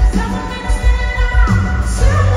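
Live pop-rock music played loud through an arena sound system: a male lead singer over a heavy drum-and-bass beat pulsing about twice a second.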